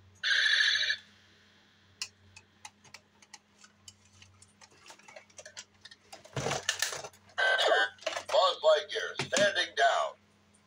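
Buzz Lightyear talking action figure: a short electronic beep in the first second, then small plastic clicks as the figure is handled and its shield is taken off. A louder jumble of rustling and warbling sounds fills the last few seconds.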